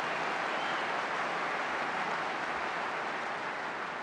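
A large crowd applauding, a steady even clatter of clapping that eases off slightly near the end.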